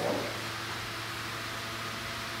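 Steady hiss of room tone with a low, even hum underneath, and the tail end of a spoken word at the very start.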